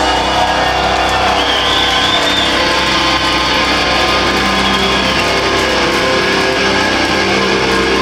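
A heavy metal band playing live, loud and unbroken: distorted electric guitars over drums and bass, heard through a crowd-level recording in a club.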